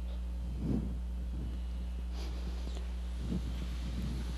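Steady low electrical hum with a faint background hiss, and two brief soft breath-like sounds, one about a second in and one near the end.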